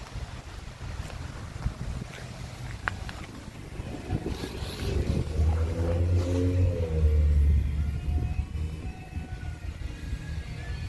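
A vehicle engine swells, rising in pitch and then falling away, over about three seconds in the middle, with a steady low rumble underneath throughout.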